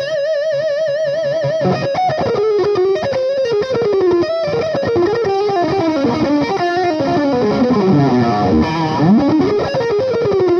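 Distorted Ibanez S Series electric guitar played lead through a Jekyll and Hyde distortion pedal and a Laney amp: a held note with wide vibrato, then fast shred runs climbing and falling.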